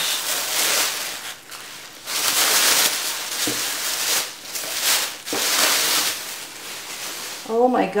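Thin plastic shopping bag rustling and crinkling as a stack of scrapbook paper is pulled out of it, in several spells with short pauses between them.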